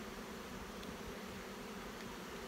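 Steady hum of honey bees from an open hive, the queenless hum of a colony that has lost its queen.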